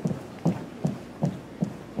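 Footsteps of a color guard marking time in unison: evenly spaced low thuds, about five in two seconds.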